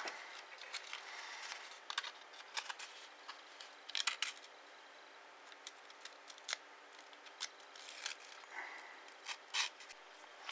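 Faint scratchy rubbing of sandpaper against the end of a thin 0.8 mm copper wire, in short strokes with a few sharper scrapes around two and four seconds in. It is sanding the insulating coating off the wire tip so that it will conduct.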